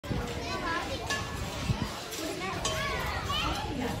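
Children's voices: several kids talking and calling out in high voices.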